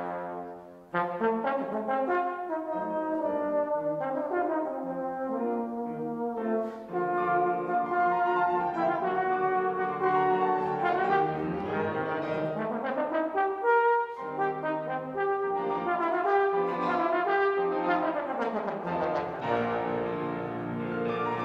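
Trombone playing a lyrical solo line of sustained, connected notes in a live classical performance with piano accompaniment, pausing briefly for breath about a second in.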